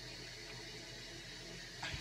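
Faint steady hiss of a running toilet: a fault where the toilet keeps running and is waiting to be fixed.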